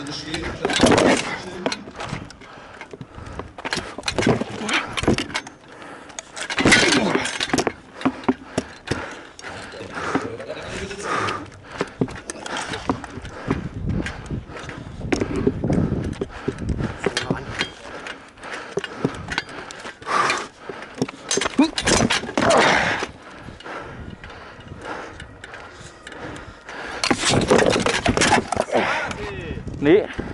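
Knocks and clatter of gladiator armour and a shield moving close to the microphone, scattered irregularly, with voices talking and calling out around them.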